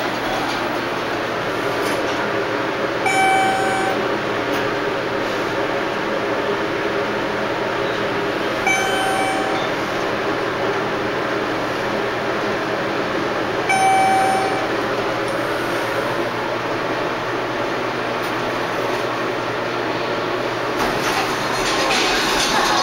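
Schindler traction elevator car descending, with a steady running noise inside the car. Three short single-tone electronic chimes sound about five seconds apart as the car reaches floors, the last one a little longer and louder.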